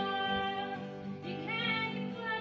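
Acoustic guitar being played with a voice singing along in long held notes.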